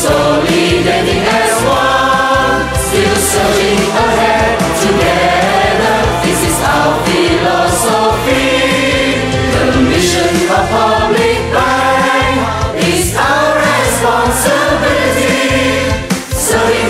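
A group of voices singing a corporate song in chorus over an instrumental backing track with bass, drums and cymbal hits.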